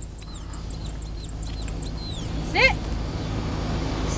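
A dog squealing and whining: a quick run of short, very high-pitched squeaks in the first two seconds, then one louder rising-and-falling yelp about two and a half seconds in. It is the eager whining of a dog worked up for its ball.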